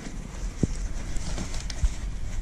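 Leather vest being handled as a hand rummages through its pockets, the leather rustling and rubbing, with a couple of short soft knocks, one just over half a second in and one near the end.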